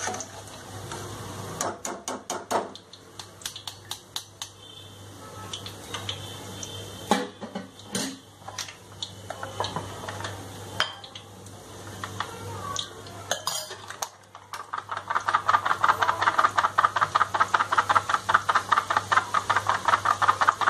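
Metal utensils clinking and knocking against a steel frying pan of hot oil while boondi is fried. About fifteen seconds in, a fast steady tapping starts, several strikes a second: the perforated container of besan batter is being shaken and tapped over the oil so the batter drips through as boondi.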